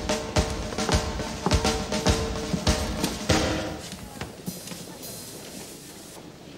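Dance band playing, a drum kit striking a beat a little under twice a second over sustained accordion notes; about three seconds in, a last hit and the music dies away.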